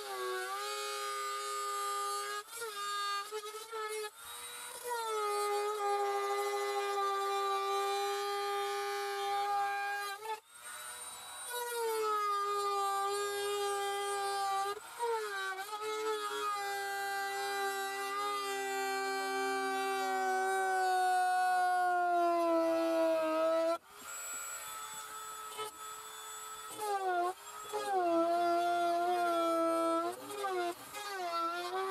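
A small corded power tool cutting the plastic of an HVAC box. Its motor gives a high whine that sags in pitch under load, then picks up again when it is restarted. It stops and starts again about a third of the way in and again near the end.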